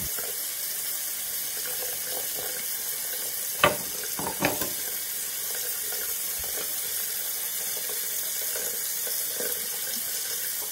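Bathroom sink tap running steadily into the basin. Two short knocks stand out, one a little before and one just after four seconds in.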